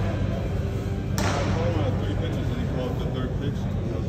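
A single sharp smack of a baseball impact about a second in, with a short echo from the large hall, over a steady low hum and faint distant voices.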